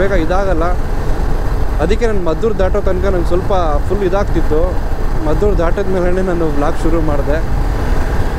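A man talking over the steady low rumble of a motorcycle riding at road speed, with wind and engine noise.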